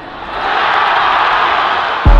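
Football stadium crowd cheering, swelling over the first half second and then holding steady.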